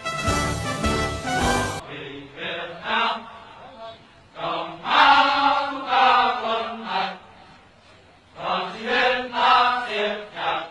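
Music cuts off suddenly about two seconds in. It gives way to an old, muffled recording of a group of men's voices chanting in unison, in phrases with short pauses between them.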